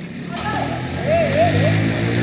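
A motor vehicle's engine running close by with a steady hum that comes in and grows louder about half a second in, then holds.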